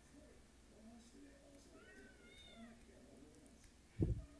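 A faint animal call over near silence: a single cry that rises and falls in pitch about halfway through.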